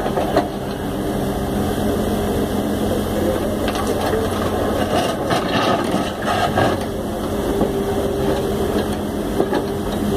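Komatsu WB93R backhoe loader's diesel engine running steadily while the backhoe arm digs with its bucket in a muddy canal. A few short knocks and scrapes come in the middle.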